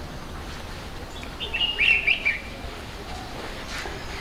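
A bird chirping: a quick run of high chirps lasting about a second, starting about a second and a half in.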